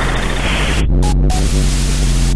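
Experimental electronic noise music: a loud steady low hum under layers of static hiss that switch on and off abruptly, the hiss cutting out a little under a second in and coming back in short bursts.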